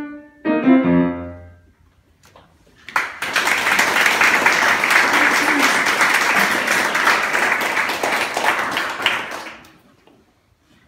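A grand piano plays two final chords, the second with a deep bass note, which ring out and fade. About three seconds in, an audience starts applauding. The applause lasts about six seconds and dies away near the end.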